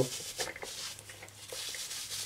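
Silicone gas mask and its head-harness straps rubbing and rustling against hair and head as the mask is pulled on. It is faint, with a few soft scuffs about half a second in.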